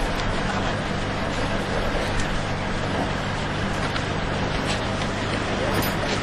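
A motor vehicle engine idling steadily in a haze of street noise.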